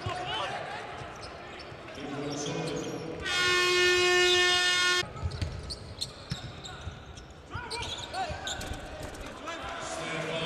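Arena horn sounding one steady buzzing tone for nearly two seconds as the clock runs out on the quarter. Before and after it, basketball shoes squeak on the hardwood court.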